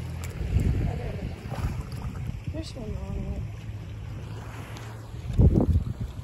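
Wind buffeting the microphone as a low, steady rumble, with faint voices around the middle. A louder low thump near the end comes as the camera is swung round.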